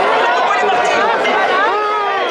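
Crowd of spectators chattering, many voices talking and calling out over one another.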